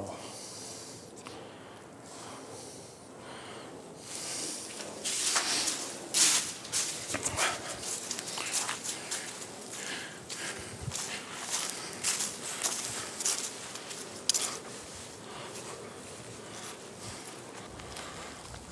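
Footsteps crunching through dry fallen leaves, irregular steps that start about four seconds in.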